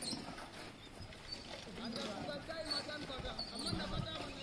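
Workers' voices talking at a distance, with occasional knocks of shovels and hoes digging into soil.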